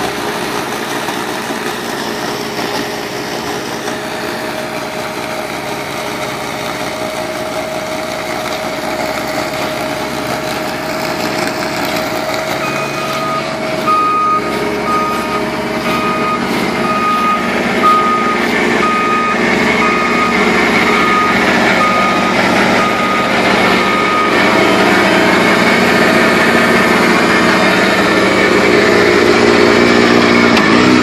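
CAT compact track loader running hard while driving a hydraulic Erskine 1812 snowblower attachment, its engine and blower running steadily and growing louder toward the end. Through the middle, for about twelve seconds, a backup alarm beeps evenly, between one and two beeps a second.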